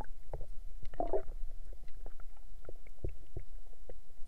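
Muffled underwater sound heard through a submerged camera: a steady low rumble with scattered faint clicks and a brief watery gurgle about a second in.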